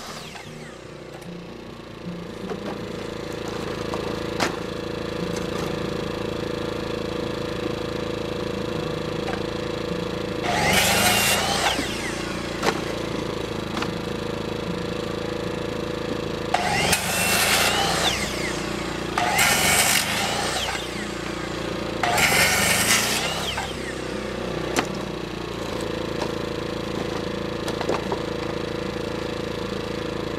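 Portable generator running steadily throughout, with an electric circular saw cutting wood in four short bursts of about a second and a half: one about a third of the way in and three close together around two-thirds through.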